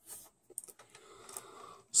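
Faint handling noise: a brief rustle at the start, then scattered soft clicks and rustles.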